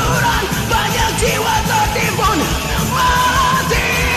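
A singer belting a power metal vocal over a karaoke backing track, with yelled, bending lines that settle into a long held high note about three seconds in.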